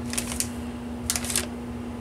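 Metallised anti-static bag crinkling in a few short rustles as a circuit board is handled inside it, over a steady low hum.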